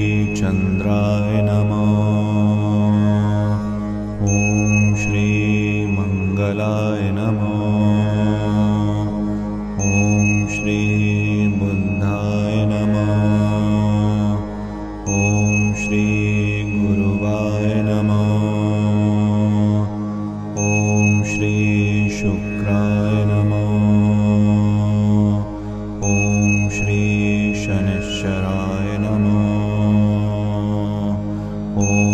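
Devotional mantra chanting over a steady low drone, with a high ringing tone recurring about every five and a half seconds.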